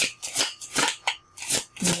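A deck of oracle cards being shuffled by hand, a quick card-on-card swish about five times, two or three a second.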